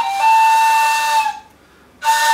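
Egyptian ney, an end-blown reed flute, playing a brief lower note that steps up into one long held note, breathy with a strong rush of air. The note fades out about a second and a half in, leaving a short pause for breath.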